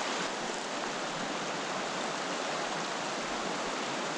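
A small mountain creek running over rocks and shallow riffles, a steady rushing of water.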